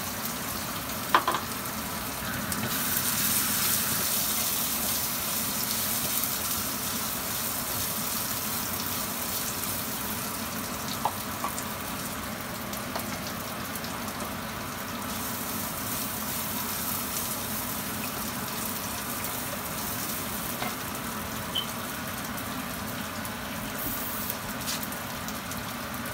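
Chopped onions and green chilli sizzling steadily in hot oil in a clay pot, the sizzle a little louder a few seconds in after they go in. A sharp click about a second in, and a few fainter clicks later.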